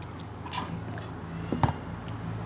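A person biting into and chewing a small snack, with one sharp crack about one and a half seconds in.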